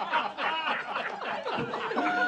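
Laughter: snickering and chuckling.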